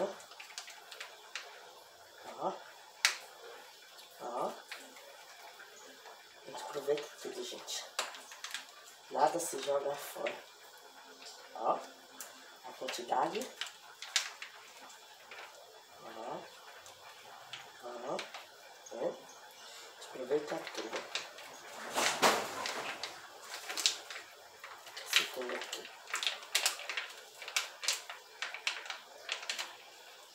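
Scattered light taps and crinkles of a plastic seasoning sachet being squeezed and shaken over chicken pieces in a plastic bowl, with brief stretches of a quiet voice in between.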